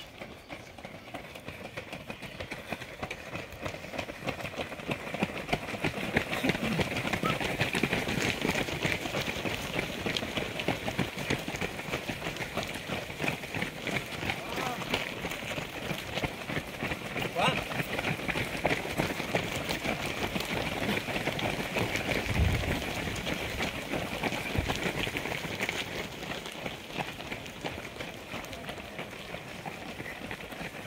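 Many runners' footsteps slapping on an asphalt lane as a race pack streams past, with indistinct voices mixed in. The patter builds over the first few seconds, stays dense through the middle and thins out near the end.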